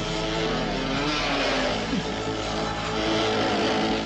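Dirt bike engines running and revving, their pitch shifting up and down.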